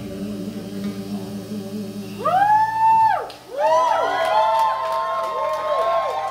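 Live band music: a low steady drone, then from about two seconds in, pitched tones that glide up, hold and slide back down, with several overlapping swoops by the end.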